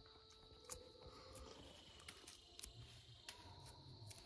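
Near silence: faint background with a steady high whine and a few soft, scattered ticks.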